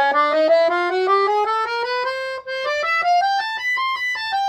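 Sonola SS5 piano accordion on its oboe treble register, the middle and high reed sets sounding together an octave apart, playing a rising scale of about four notes a second over two octaves and reaching the top note near the end.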